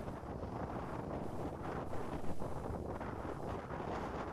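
Stormy wind buffeting the microphone, a steady rushing noise, over surf breaking on a pebble beach.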